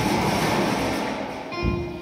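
Roland E-09 electronic keyboard music between phrases of a sermon: a fading wash of sound that gives way to a few held notes near the end, with a short low thump just before them.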